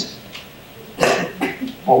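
A short cough about a second in, followed by a smaller one, close to a lapel microphone.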